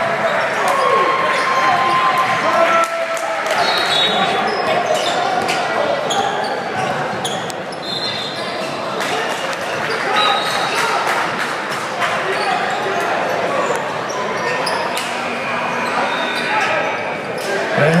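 Basketball game sounds echoing in a gym: a ball bouncing on the hardwood court, with voices of players and spectators throughout and a few short, high squeaks.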